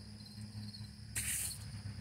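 Insects chirping steadily in the background over a low hum. About a second in comes one short breathy hiss, a smoker exhaling cigarette smoke.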